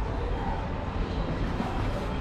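Steady low rumble and hiss of background noise with a faint hum, with no distinct events.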